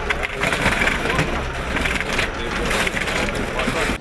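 Location sound at a crash scene: indistinct voices of people standing around, under a dense, steady crackling noise with a low rumble.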